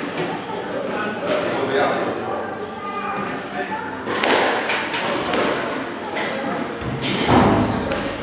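Squash rally: the ball is struck by rackets and thuds against the court walls, with sharp impacts clustered about four to five seconds in and another near seven seconds.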